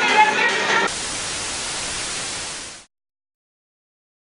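Voices for the first second. Then a steady hiss of static cuts in suddenly, runs for about two seconds, fades out quickly, and gives way to dead silence.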